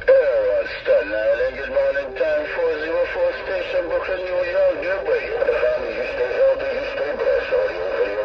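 A voice transmission received over a CB radio speaker, narrow and distorted, too garbled to make out words, with thin steady tones riding above it.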